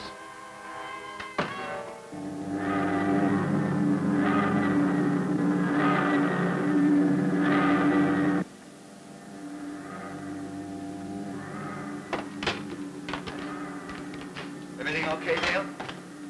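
Science-fiction TV soundtrack music and effects: a loud, steady humming chord with regular swells that cuts off suddenly about eight seconds in. A quieter steady hum with a few clicks follows.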